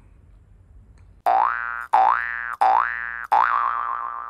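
Cartoon boing sound effects from a Like and Share outro animation. About a second in come four springy boings in quick succession, each swooping up in pitch; the last one wobbles and fades away.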